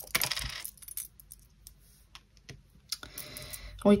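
Small metal charm pendants clinking against one another as they are picked through in the palm: a run of light, irregular metallic clicks, busiest in the first second and sparser after.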